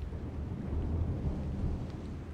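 Low, steady rumble of distant thunder under a hiss of rain: a storm heard from indoors.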